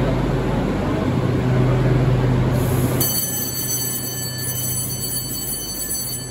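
A Beijing Subway Line 5 train stands at the platform with a steady rumble and low hum. About halfway through, the sound changes abruptly to a quieter one with several thin, steady high tones.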